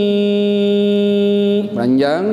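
A man's voice holding one long, steady note in melodic Quran recitation (tilawah). The note stops about one and a half seconds in, and he starts to speak near the end.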